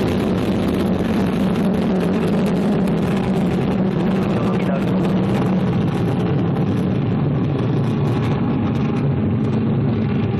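Vega rocket's P80 solid-fuel first stage burning in flight: a steady, deep rocket noise with a crackling top, the highest part of which thins out near the end as the rocket climbs away.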